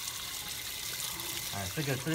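Water running steadily from a wall tap and splashing over a yam tuber held under it and onto the tiled floor as the soil is rinsed off by hand. A voice comes in near the end.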